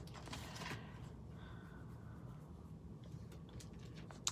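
Spiral-bound paper planner being opened and laid flat: a few soft paper rustles and light taps in the first second, then faint room tone.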